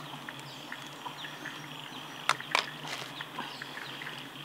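Two sharp clicks in quick succession a little past two seconds in, from gear being handled at a backpack, over a steady high insect buzz and scattered short bird chirps.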